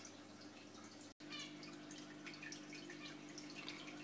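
Faint fish-room background: a steady low hum from aquarium equipment with faint dripping and trickling water. The sound drops out for a moment about a second in.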